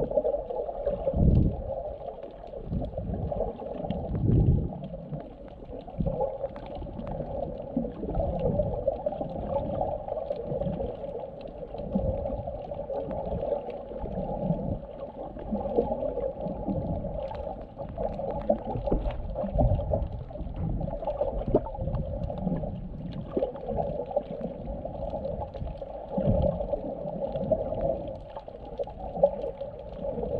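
Muffled underwater water noise picked up by a camera held below the surface: a steady churning rush of moving water, with irregular low thumps, the loudest a little after the start and near the end.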